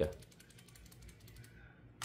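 A quick run of faint metallic clicks as small airgun parts, the regulator assembly of a PCP air rifle, are handled and set back in place.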